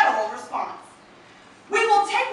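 A woman speaking, with a pause of under a second in the middle.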